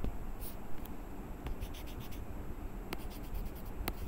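A stylus writing on a tablet: short scratches and taps come in small clusters, about one and a half to two seconds in and again near the end, over a steady low background hum.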